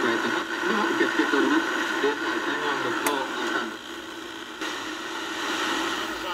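Shortwave receiver audio through a small speaker: a faint, static-laden voice from a distant station under steady hiss while the dial is turned. There is a sharp click about three seconds in, and the voice fades into noise and steadier tones shortly after.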